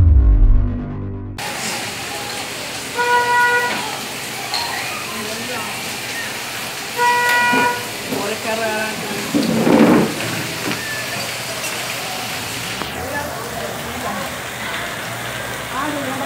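A news intro sting ends about a second in, followed by steady rain and street noise. A vehicle horn sounds twice, about four seconds apart, with a louder rush of noise near the middle and voices in the background.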